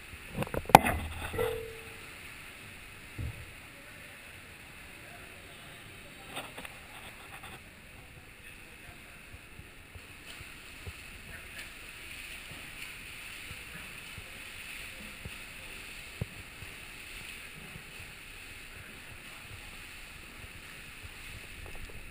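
Echoing indoor swimming pool: a steady wash of water noise from swimmers splashing through butterfly strokes. A cluster of sharp knocks and clatter in the first two seconds is the loudest thing, with a few single knocks later.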